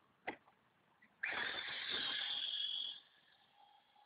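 Maverick Scout RC truck's 27-turn electric motor and drivetrain running as the truck drives off across gravel: the sound comes in suddenly about a second in, holds steady and loud for under two seconds, then cuts off. A single short click comes just before.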